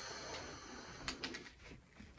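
Faint hiss of a man breathing out a lungful of smoke, followed a little after a second in by a few soft clicks.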